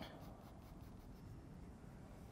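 Faint scratching of a graphite pencil lead on paper, short repeated hatching strokes.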